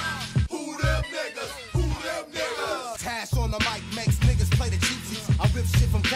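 Hip hop track with a rapping voice over a heavy bass beat. The bass drops out for about three seconds, then the full beat comes back.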